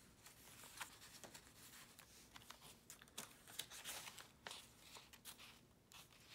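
Faint rustling and a few soft ticks of paper and cardstock being handled as a handmade paper journal's tag is tucked away and its pages are turned.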